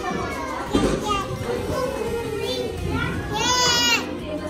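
Young children's voices and chatter in a play area, ending with a toddler's high-pitched squeal that lasts under a second.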